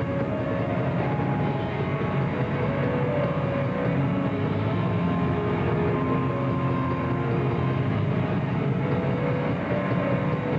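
Metal band playing live: a dense, unbroken wall of distorted electric guitar and drums, with long held notes over it.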